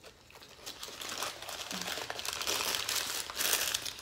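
Yellow paper burger wrapper being crumpled and scrunched in the hands, a crinkling that starts under a second in and grows louder toward the end.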